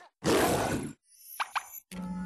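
Cartoon sound effects for an animated Android robot in a TV commercial: a short, dense noisy burst lasting under a second, then, after a brief gap, two quick upward-gliding blips.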